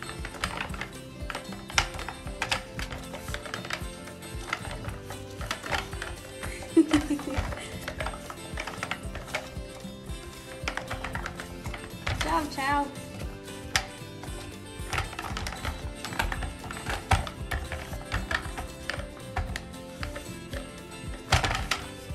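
Hard plastic canisters of a treat-dispensing enrichment toy clicking and knocking irregularly as an otter paws and twists them to work a lid loose, over background music.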